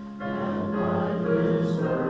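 A church congregation singing a hymn with keyboard accompaniment; a new chord comes in about a quarter second in and the singing grows louder.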